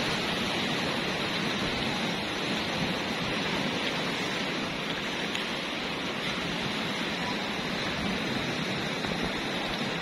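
Surf breaking on a rocky beach: a continuous, even rushing wash of waves with no single crash standing out.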